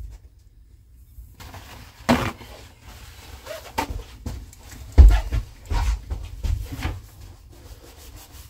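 Fingers rubbing and scraping at residue along the edge of a stainless sink set into a plywood countertop, with a few dull knocks and thumps against the counter, the loudest about five seconds in.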